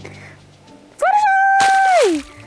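A high-pitched voice crying out, as a toy pony is voiced falling into mud: it starts about a second in, rises briefly, holds one steady note for about a second and slides down at the end, with a burst of noise over its second half.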